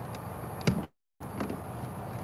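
Plastic cover panel on a 2021 Sea-Doo RXP-X personal watercraft being unhooked from its hooks and lifted off. There is a sharp click about two-thirds of a second in and a fainter knock about half a second later, and the sound cuts out completely for a moment in between.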